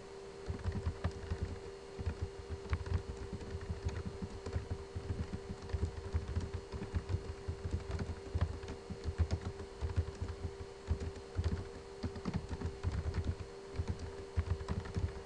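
Typing on a computer keyboard: a fast, irregular run of key clicks and thumps that picks up about half a second in, over a steady low hum.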